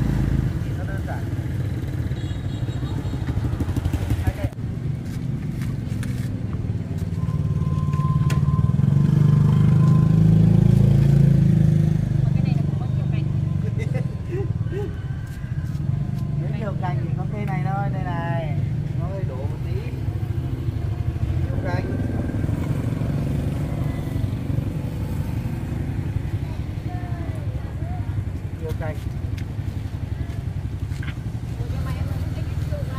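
A motorcycle engine runs nearby with a low rumble that swells from about eight seconds in and eases off around twelve seconds, under people talking.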